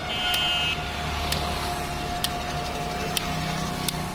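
Roadside traffic running steadily, with a brief high-pitched beep just after the start and a sharp tick about once a second.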